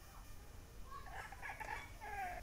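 Faint animal calls in the background, starting about a second in.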